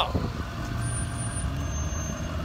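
School bus engine running close by as the bus drives up alongside, a low steady rumble.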